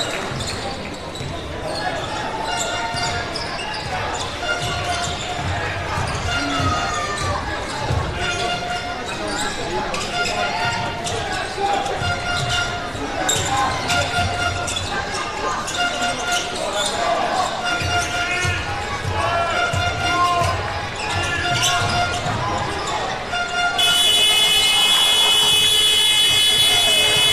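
Indoor basketball game sound: a ball dribbling on a hardwood court, sneakers squeaking and crowd voices echoing in the arena hall. Near the end a loud steady horn starts and keeps sounding.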